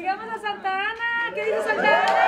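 Crowd chatter: many people talking and calling out at once in a room.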